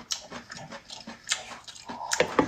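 Close-miked chewing and wet lip-smacking as braised pork large intestine is bitten and eaten, a quick irregular run of short smacks.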